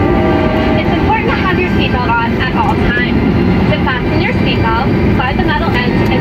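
A voice giving the safety briefing over the cabin speakers of a Boeing 737-900ER, over the plane's steady cabin rumble as it taxis. Held musical tones from the briefing's opening fade out in the first half-second.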